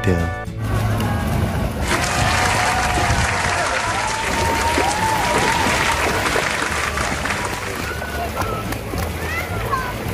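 Busy splash pad: many children shrieking and calling over the hiss and splash of water, starting about two seconds in, with background music underneath.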